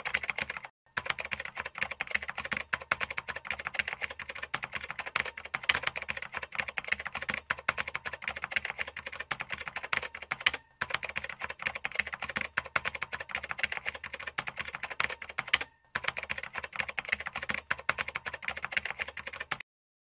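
Computer-keyboard typing sound effect: fast, continuous key clicks that keep pace with on-screen text being typed out. They break off briefly about a second in and twice more later, and stop just before the end.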